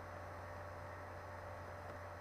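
Steady low electrical hum with a faint hiss, the background noise of the recording during a pause in the speech.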